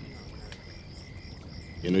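Crickets chirping steadily in a high, even trill through a pause in the talk, with a man's voice starting again near the end.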